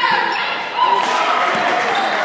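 Basketball game in a large gym: a ball bouncing on the hardwood court, short squeaks that fit sneakers on the floor, and players' voices, all echoing in the hall.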